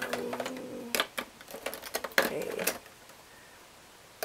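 A drawn-out hesitant "uhh", then a run of light clicks and knocks of small objects handled on a worktable as supplies are rummaged through in search of a bottle of black ink. Quiet for the last second.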